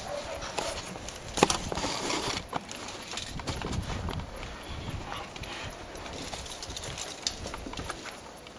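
Irregular light clicks and knocks from handling during hands-on work in a car's engine bay, with one sharper click about a second and a half in.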